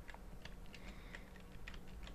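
Faint typing on a computer keyboard: a scatter of light, irregular key clicks.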